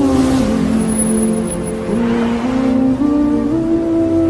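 An SUV driving past, with a rush of tyre and engine noise at the start that fades and a second, weaker surge about halfway through. Music plays underneath throughout.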